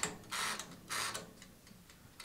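Mechanical timer dial of a Mito MO-666 electric oven ticking as it is turned and set for preheating.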